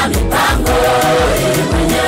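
A choir singing a Swahili gospel song over a band with a steady drum beat.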